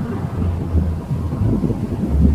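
Wind buffeting the microphone, a low rumble that comes in gusts.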